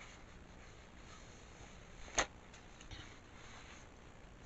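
Faint chewing and mouth sounds from someone eating a soft pickle roll-up, with one sharp click about two seconds in and a couple of fainter ticks after it.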